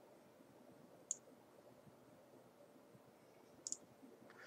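Faint computer mouse button clicks over quiet room tone: a single click about a second in and two quick clicks near the end.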